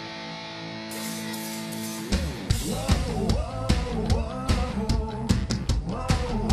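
Live rock band opening a song: a sustained chord holds for about two seconds, then drums, bass and guitar come in together with a vocal over them.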